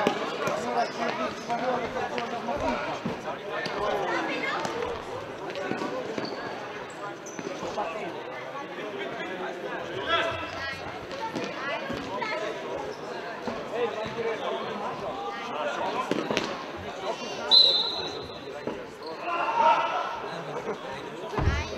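Sound of an indoor futsal game in a sports hall: voices of players and spectators echoing in the hall, with the sharp knocks of the ball being kicked and bouncing on the floor. A brief high-pitched squeak comes about two and a half seconds before the end.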